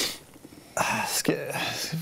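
A man's breathy, whispered voice: a sharp breath right at the start, then whispered, half-voiced sounds from just under a second in.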